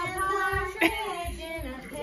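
A child singing in a high voice, the pitch rising and falling through a drawn-out line of a Christmas carol, with a short click just under a second in.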